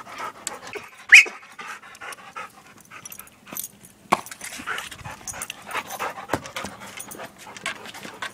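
A dog panting, with scattered small clicks and snuffles, and one short, sharp, high sound about a second in that is the loudest thing heard.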